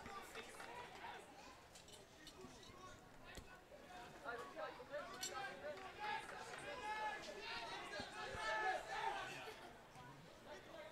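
Faint voices of players and people along the touchline calling out and chattering across the pitch, clearer and louder from about four seconds in, with a few short sharp clicks.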